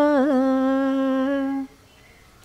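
An older woman singing unaccompanied, holding one long note with a brief ornamental turn about a quarter second in; the note ends shortly before the close.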